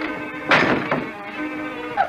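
An old film soundtrack: steady background score with one loud thunk about half a second in, a slapstick blow or fall that dies away quickly.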